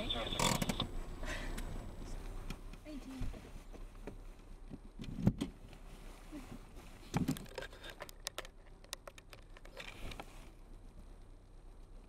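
Quiet background with a few faint, muffled voices coming and going, and scattered small clicks.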